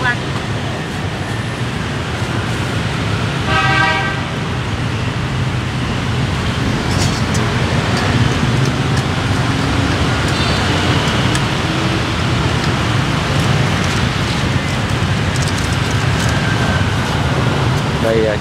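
Busy city street traffic with motorbikes and cars passing close by as a steady rumble, and a vehicle horn honking once, briefly, about four seconds in.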